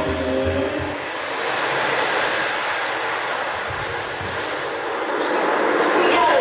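A steady rushing noise with no clear pitch, in a break between passages of music, with a few low thumps about four seconds in.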